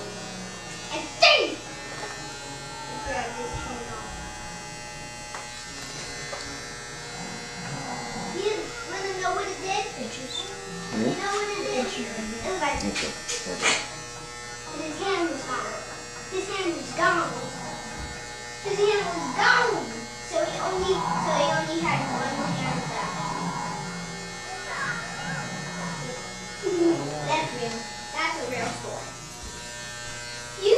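Electric hair clippers buzzing steadily as they cut a boy's hair, with voices talking over them.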